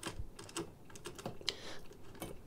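Faint scattered clicks and light taps of handling noise as the camera is picked up and moved.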